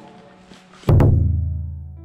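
Edited-in musical sting: a chord fades out, then about a second in comes a sudden loud, deep hit whose low tones ring on and die away slowly.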